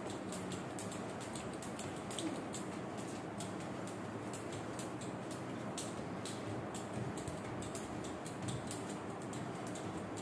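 A speed skipping rope being turned fast, giving a rapid, even run of light ticks as it strikes the floor over a steady hiss.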